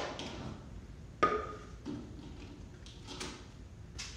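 A light knock with a brief ring about a second in, then a few faint ticks, as a wooden mallet and a chisel are handled between strikes.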